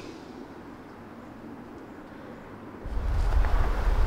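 Faint outdoor ambience, then about three seconds in a low rumble of wind buffeting the microphone sets in abruptly.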